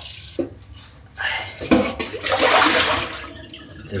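Kitchen tap running and splashing over vegetables being washed in the sink, the splashing swelling loudest around the middle and easing off toward the end, with a couple of light knocks early on.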